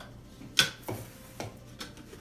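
Sharp clinks and knocks of a utensil and jar lid against glass storage jars and a mixing bowl as flour is scooped out and added. There are about four, the loudest a little after half a second in.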